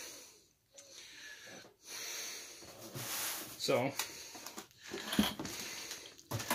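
Plastic wrapping and paper rustling as they are handled inside a cardboard box, in several short bursts with a few light knocks.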